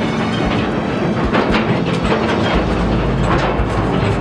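Old steel mine ore car rolling along narrow-gauge rails, its wheels rattling and clicking over the track, with a heavier rumble from about halfway through.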